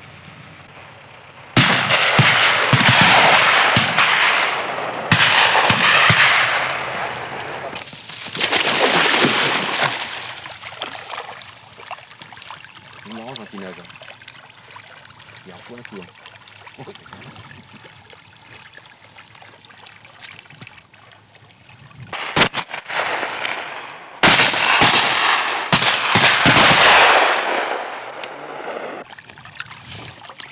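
Shotguns fired at flying ducks: three loud shots in the first ten seconds, each with a long fading tail, then a lull, then another quick cluster of shots in the last eight seconds.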